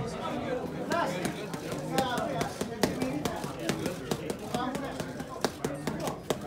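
Boxing gloves smacking punch mitts in quick, irregular combinations, a string of sharp cracks several a second, over background crowd chatter.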